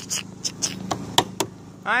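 A few short, sharp clicks and taps of hands on the plastic swing seat and its harness bar, the loudest about a second in, over a low steady hum.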